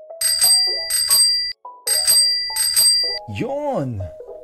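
A bicycle bell rung in two quick double rings, each ring cut off sharply, over low steady tones. Near the end a voice slides up and then down in pitch.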